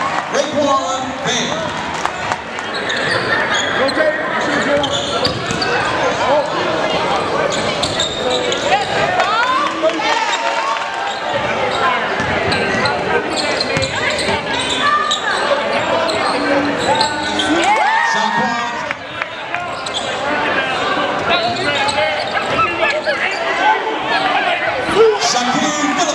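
Live sound of a basketball game in a large gym. A basketball is dribbled on the hardwood court under a continuous mix of crowd and player voices, all echoing in the hall.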